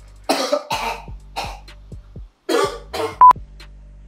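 A man coughing in several short bursts over background music with a steady beat. A brief high censor bleep about three seconds in is the loudest sound.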